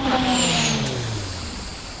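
Sound effect of an electric train braking to a stop: its motor hum falls steadily in pitch and fades, with a hiss and a brief high squeal in the first second.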